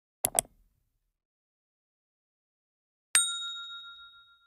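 Two quick mouse-click sound effects, then about three seconds in a single bright ding that rings on and fades over about a second: the click and notification-bell sound effects of a subscribe-button animation.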